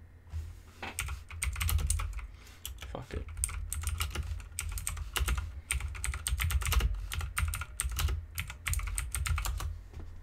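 Typing on a computer keyboard: quick runs of keystrokes from about a second in until just before the end, broken by short pauses.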